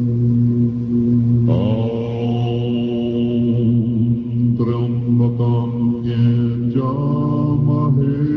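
A group of Tibetan Buddhist monks chanting prayers together in deep, steady voices on a held drone, with voices sliding up into new phrases about one and a half, four and a half and nearly seven seconds in. It is recorded on a battery-powered hand-held tape recorder.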